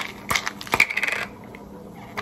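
A plastic vitamin bottle being handled and its cap twisted open: a few sharp clicks and a short jingling rattle in the first second or so, then quieter.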